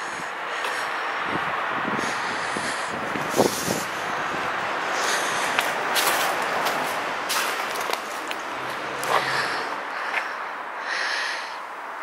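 Steady outdoor background noise with a few scattered short crunches and clicks.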